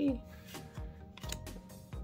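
Paper trading cards being handled and slid from the front to the back of a hand-held stack, making a few light clicks and slides over soft background music.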